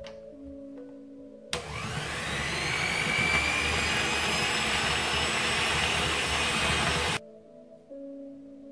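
Electric hand mixer with dough hooks running in a glass bowl of flour and cold butter for pie-crust dough. It starts about a second and a half in with a whine that rises as the motor spins up, runs steadily, and cuts off suddenly near the end.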